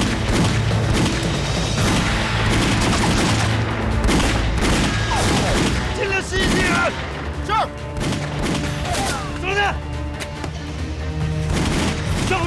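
Battle gunfire: many rifle and machine-gun shots in quick, overlapping volleys over a steady low musical drone. The shooting thins out after about six seconds.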